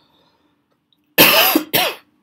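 A person coughing twice in quick succession, loud and close to the microphone, starting a little over a second in.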